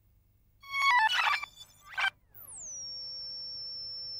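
A short electronic jingle: a quick run of chime-like notes stepping down in pitch, a brief burst, then a tone that glides down and holds steady.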